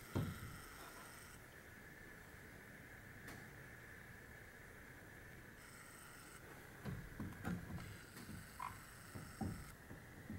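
Dry-erase marker writing on a whiteboard: a run of short, faint strokes in the last few seconds over a low steady background tone. The first several seconds are near quiet.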